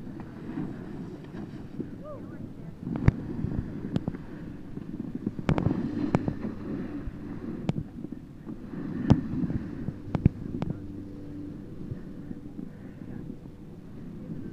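Wind buffeting the microphone and the low scraping rush of a rider sliding over chopped-up snow, broken by several sharp knocks from bumps and jolts.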